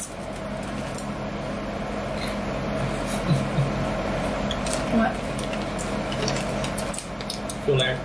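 Two people chewing puffed caramel maple corn snacks, with scattered short crunches over a steady hiss of room noise and a couple of brief hums about three and five seconds in.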